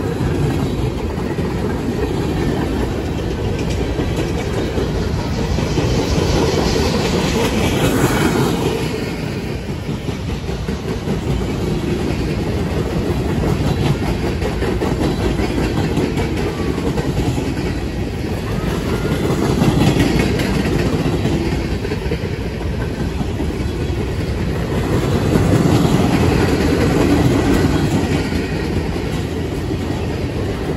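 Empty railroad flatcars of a long freight train rolling past at speed: a steady rumble and clatter of steel wheels on the rails, swelling louder every several seconds.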